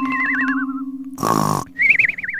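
Cartoon snoring sound effect: a snore followed by a warbling whistle that slides down in pitch, the snore and whistle coming round again about a second in, over a steady held musical note.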